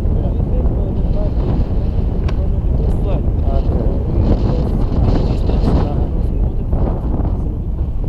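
Wind buffeting the action camera's microphone in flight under a tandem paraglider: a loud, steady low rumble of moving air.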